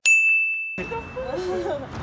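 A single bright ding sound effect, a bell-like chime that rings out and fades over about a second. It opens on an edit cut to silence, and chatting voices come back in under its tail.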